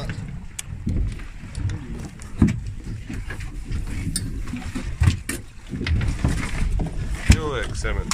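A few sharp knocks and thumps on a boat deck over a steady low rumble, with muffled voices.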